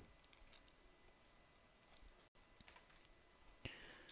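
Near silence with a few faint, scattered clicks of a computer keyboard and mouse as a number is typed into a field.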